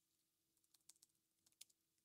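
Faint typing on a computer keyboard: a quick, uneven run of key clicks beginning about half a second in.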